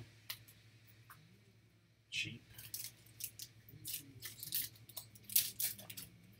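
Trading card packs and cards being handled by hand: quiet for about two seconds, then a run of short, crisp crinkles and clicks.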